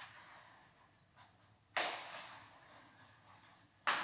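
Two sharp clicks: one a little under two seconds in, fading quickly, and another just at the end, with faint ticks before the first.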